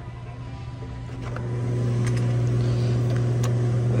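Steady low hum of a refrigerated glass-door drinks cooler, growing louder about a second in as the door is opened and then holding steady.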